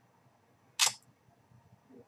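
A single short mouth click, a lip smack, just under a second in, during an otherwise quiet pause.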